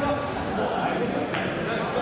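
Echoing sports-hall ambience with voices, a brief high-pitched tone about a second in, and a single thump just after it.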